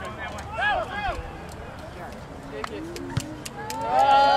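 Several voices shouting short calls across an open rugby field, with scattered faint knocks. A louder, drawn-out shout begins near the end.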